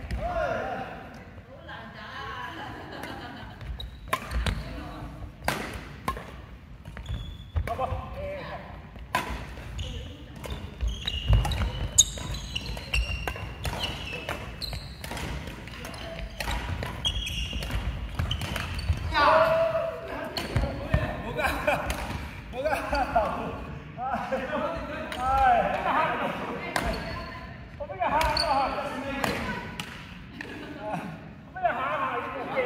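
A badminton rally: rackets hitting a shuttlecock in irregular sharp smacks, with players' feet on the wooden court floor, followed by people's voices in the second half.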